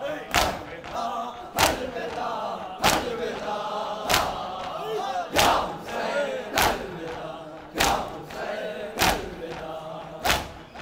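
A crowd of mourners doing matam, beating their chests in unison with a loud slap about every 1.2 seconds. Between the strikes, many voices chant a noha together.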